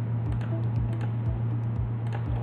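Light, irregular clicking at a computer, scattered through the pause, over a steady low electrical hum and hiss.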